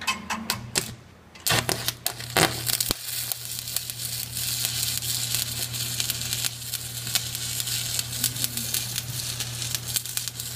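Stick (shielded metal arc) welding: the electrode is tapped and scratched against the steel plate with a few sharp clicks in the first second and a half to strike the arc. The arc then catches and runs with a steady crackling sizzle over a low hum as the bead is laid.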